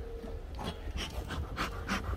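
Bee smoker bellows being pumped over an open hive: repeated short puffs of air, about three a second, starting about half a second in.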